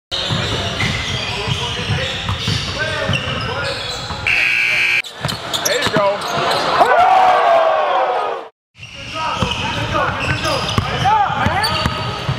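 Basketball gym sound: a crowd of voices and a ball bouncing on a hardwood court. From about five seconds in this gives way to a short logo sound effect with a sweeping, arching tone, then a brief dropout. Gym noise returns with sneakers squeaking on the court near the end.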